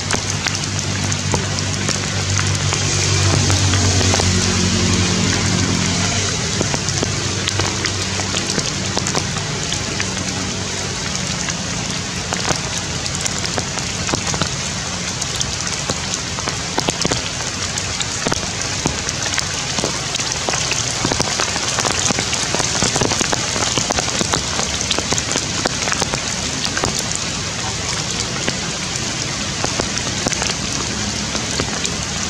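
Steady rain pattering on forest foliage: a dense hiss with many small drop ticks. For the first several seconds a low droning hum, loudest about four seconds in, slides down in pitch and fades away beneath it.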